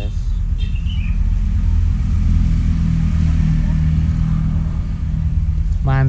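A motor vehicle engine running close by: a low, steady hum that grows louder through the middle and eases off near the end.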